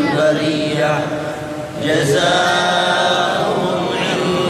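A man's voice reciting the Qur'an in Arabic in a melodic, chanted style, drawing out long held notes, with a short break just before the middle.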